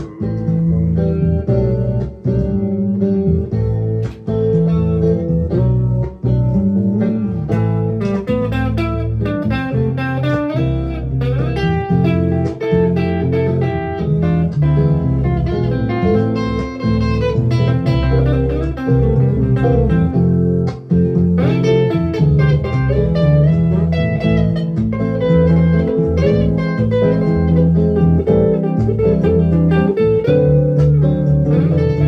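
Electric guitar with a Bigsby vibrato tailpiece played solo, picking a continuous run of notes with a few short breaks.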